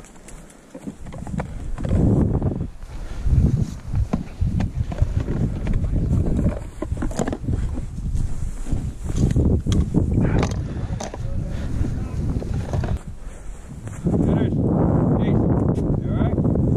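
Wind buffeting the microphone in uneven low rumbles, with rustling and footsteps as the camera is carried through dry grass. The rumbling gets heavier and steadier near the end.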